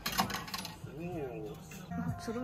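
Metal token coins clinking in a quick cluster of sharp, bright clicks, followed about a second in by a short voiced sound.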